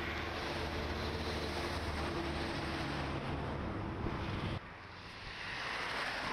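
Road traffic passing: a heavy truck's engine running with the rush of tyres and cars going by. It cuts off abruptly after about four and a half seconds, leaving quieter street noise with a softer rush of a passing vehicle swelling near the end.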